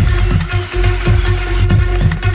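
Electronic dance music from a DJ mix: a fast, steady kick drum, about four beats a second, under a held synth tone and ticking high percussion.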